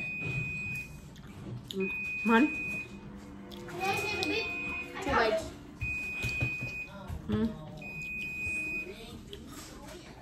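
An electronic alarm beeping: a steady high tone about a second long, repeated every two seconds, five times. Short bursts of voice fall between the beeps.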